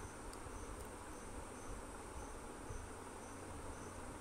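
Faint insect chirping: short high chirps about twice a second over a steady high hiss.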